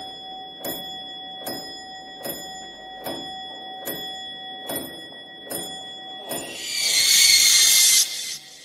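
Horror-style soundtrack effect: sharp ticks about every 0.8 seconds over a steady high ringing tone, then a loud hiss swells up near the end and cuts off suddenly.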